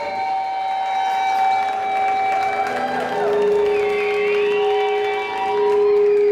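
Live rock band playing on stage: electric guitar and drums, with long held notes; a lower note is sustained from about three seconds in.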